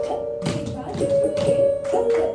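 Classical Indian dance music: a held melodic line stepping between a few notes, with sharp taps about twice a second.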